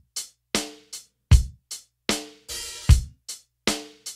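Tourtech TT16S electronic drum kit played slowly in a simple beat of bass drum, snare and hi-hat, about two to three evenly spaced strokes a second. An open hi-hat rings briefly a little past halfway, closing the bar.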